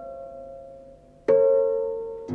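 Solo harp playing a slow, lyrical theme: a plucked chord rings and fades away, and a new note is plucked about a second and a quarter in and left ringing.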